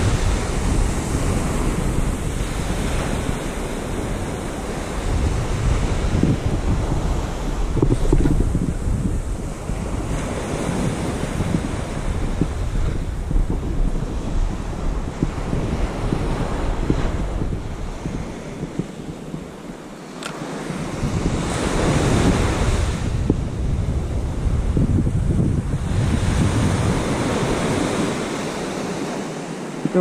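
Waves breaking and washing up a sandy beach, swelling and easing in surges, with wind rumbling on the microphone.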